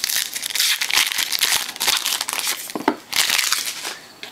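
Trading card pack wrapper being torn open and crinkled by hand, a dense run of crackling that eases off near the end.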